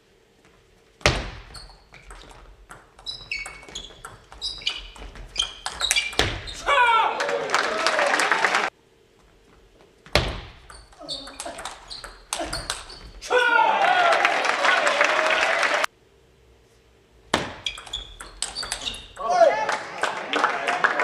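Table tennis rallies: the plastic ball clicks sharply off bats and table in quick, uneven series. Each rally ends in applause and shouts from the crowd in a reverberant hall. The sound cuts out briefly three times, about a second in, near the middle and after about sixteen seconds.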